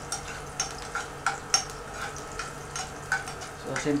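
Garlic sizzling in hot oil in a frying pan while a metal spoon stirs it, scraping and clicking against the pan at irregular moments. A low steady hum runs underneath.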